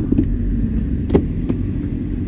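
A vehicle's engine running steadily at low revs as a low rumble, with a few short knocks, one about a second and a half in.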